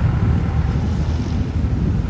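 Steady low rumble of city street traffic, with a passenger jeepney's engine moving off close by.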